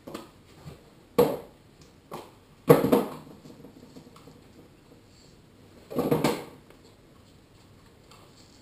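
A half-face respirator mask and its straps being handled and fitted: a handful of short rustles and knocks, the loudest about three seconds in and another around six seconds.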